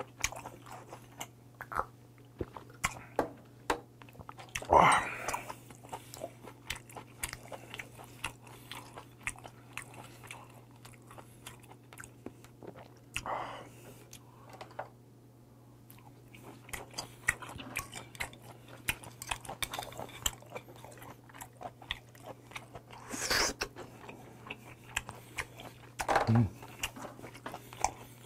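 Close-miked chewing of white whelk meat: many small wet clicking and smacking mouth sounds, with a few louder bursts about five, thirteen and twenty-three seconds in.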